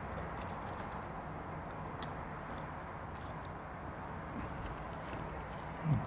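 Insulated screwdriver tightening a brass terminal screw on a new wall switch: a few faint, scattered clicks and scrapes of metal on metal over a steady low room hum.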